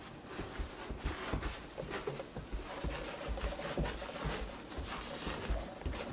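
Soft rubbing and scuffing with light irregular thumps as a baby crawls on hands and knees across the floor.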